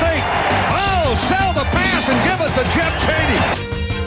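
Backing music over a stadium crowd cheering and yelling from the game broadcast. The crowd noise drops away about three and a half seconds in, leaving the music.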